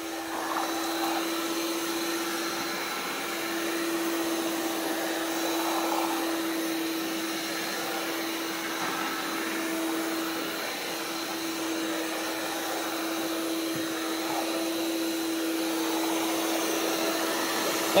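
Electric hand mixer running steadily, a constant motor hum, its beaters churning homemade soap batter of used frying oil, caustic soda and detergent in a plastic basin as the mix begins to thicken.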